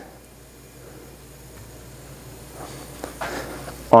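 Quiet pouring of grapeseed oil into a tablespoon and onto a hot cast iron skillet, with faint soft hiss and a few light sounds a little under three seconds in, over a low steady hum.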